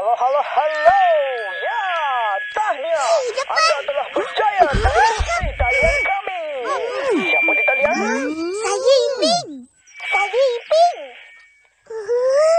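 Garbled radio call-in transmission with interference: distorted voices warbling and sliding in pitch over a band of static hiss, with a few steady whistling tones. There is a short drop-out about ten seconds in.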